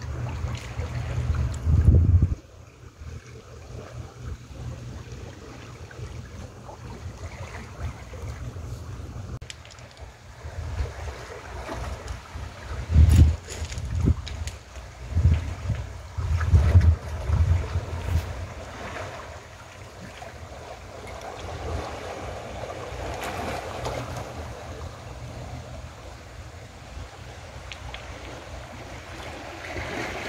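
Small sea waves washing and lapping among beach stones and rocks, with wind buffeting the microphone in low rumbling gusts, strongest in the first two seconds and again in a cluster in the middle.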